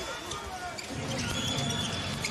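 Arena crowd noise from an NBA game, with a basketball being dribbled on the hardwood court and a sneaker squeak in the second half.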